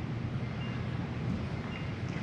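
Room tone: a steady low hum and hiss of background noise, with no speech and no distinct event.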